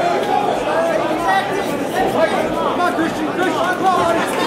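Crowd of spectators talking and shouting, many voices overlapping in a large hall.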